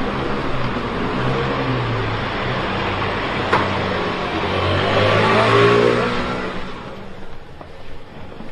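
Street traffic: a motor vehicle's engine and tyres, growing louder about five seconds in and then fading as it passes.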